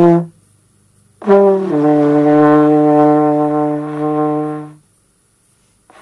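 Beginner playing a trombone: a held note cuts off just after the start, then after a short gap a second note starts higher, drops to a lower pitch about half a second in, and holds steadily for about three seconds before stopping.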